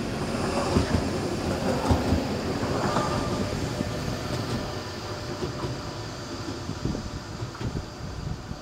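Tram passing along a viaduct, running with irregular knocks from its wheels on the track. It is loudest in the first few seconds and fades as it moves away.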